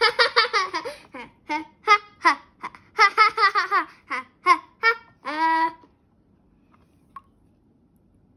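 A child laughing in rapid bursts of pitched 'ha-ha' pulses for about six seconds, ending with one longer held sound.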